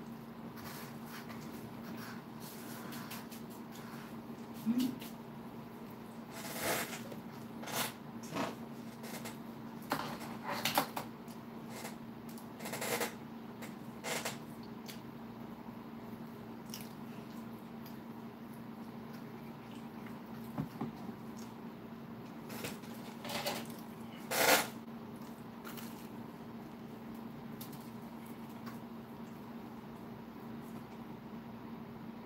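Close-up eating sounds: a man chewing and smacking his lips over fish sticks, in scattered short bursts, the loudest about three quarters of the way through. A steady low hum runs underneath.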